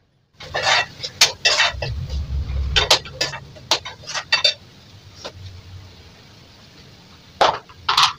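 Metal spoon knocking and scraping against a steel kadhai while a curry is stirred: a quick run of sharp clinks over the first few seconds, then two more knocks near the end.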